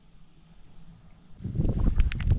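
A faint low steady hum, then about a second and a half in a loud low rumble of wind buffeting the microphone outdoors on the open ice, with a few crackles.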